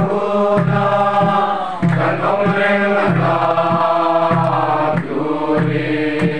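Group of men and women singing a slow Mizo hymn together in unison, held notes over a steady beat of about one and a half strokes a second, in the manner of Mizo mourning-house singing with a drum.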